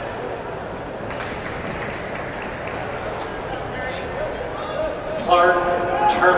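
Indoor arena crowd murmur, a steady hum of many distant voices, with a few faint clicks. About five seconds in, a single voice calls out loudly over it.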